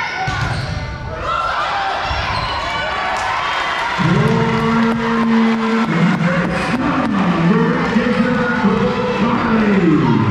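Volleyball rally in a gymnasium: a few dull thumps of the ball being hit over crowd chatter. From about four seconds in, a loud held pitched sound starts on two steady notes, then slides down and back up several times before falling away at the end.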